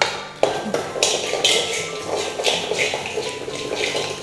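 A steel spoon stirring and scraping grain around a stainless-steel kadai on a gas stove, in short strokes roughly twice a second.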